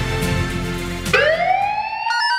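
Television programme music, which about a second in gives way to a synthesized tone sweeping upward in pitch and levelling off. This is the start of an animated title sting.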